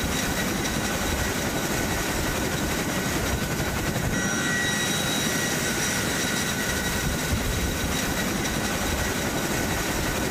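Transport helicopter running close by with its rear ramp down, a steady, loud wash of rotor and turbine noise with a faint high whine over it.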